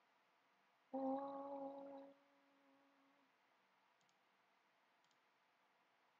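A short steady tone with overtones, about a second long, starts about a second in and fades out, followed by a few faint computer mouse clicks.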